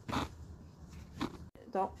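A short rustling noise near the start, then a woman's voice begins speaking near the end.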